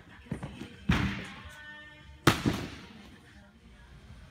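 Several hard thuds and slaps in a large, echoing gym hall, the loudest a little after two seconds in with a second one close behind: a gymnast striking the apparatus and mats.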